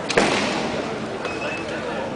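One sharp crack of bamboo shinai striking, just after the start, followed by loud kiai shouting from the kendo players.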